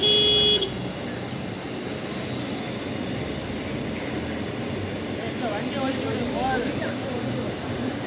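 A vehicle horn sounds once, briefly and at a steady pitch, right at the start. Then steady outdoor street noise, with people's voices talking in the background in the second half.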